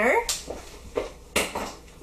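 Two short knocks or clatters about a second apart, the second louder, after the end of a spoken word.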